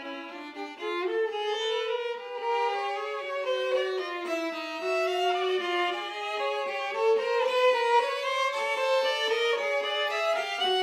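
Two violins playing a duet, bowing overlapping held notes that move against each other.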